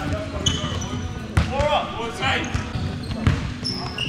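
Basketball bouncing on a hardwood gym floor, with a few short high sneaker squeaks and players' voices in the large hall.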